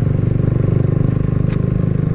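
Kawasaki W175's air-cooled single-cylinder engine running steadily as the bike rides along, with a brief sharp tick about one and a half seconds in.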